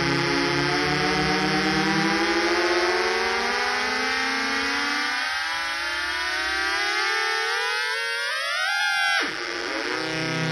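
Box of Beezz nine-oscillator drone synth playing a dense chord of many tones, all gliding steadily upward together as the master tune knob is turned. About nine seconds in the pitch drops sharply back down, and the drone settles steady again.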